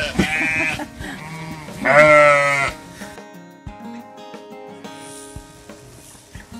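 Sheep bleating loudly twice, one call at the start and a second about two seconds in, each with a wavering pitch. Background music with sustained notes follows.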